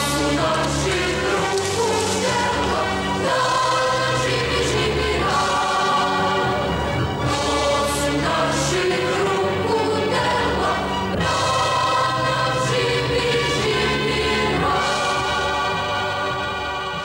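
Choral music: a choir singing slow, held chords that change every few seconds.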